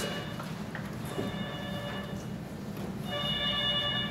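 A phone ringtone ringing: a high electronic tone pattern repeating in bursts of about a second, loudest near the end.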